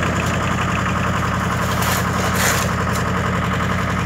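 Towable diesel air compressor's engine running steadily at a constant speed, with a few short sharp noises about two seconds in.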